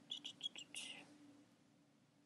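A quick run of about five computer keyboard keystrokes in the first second, then only a faint steady hum.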